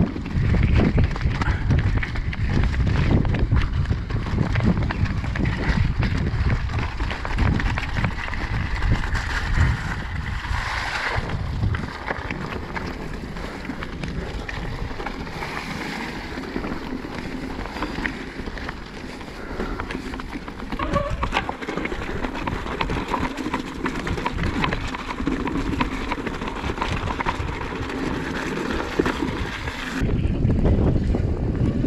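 Mountain bike rattling and clattering down a rocky trail, tyres crunching over stones, under heavy wind buffeting on the microphone and a flapping rucksack strap. The rattle is loudest over the first dozen seconds, eases for a while, then picks up again.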